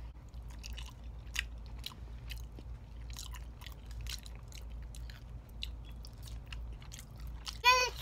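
Close-up chewing and biting into raw cucumber and sour pig's feet: an uneven run of small wet clicks and crunches.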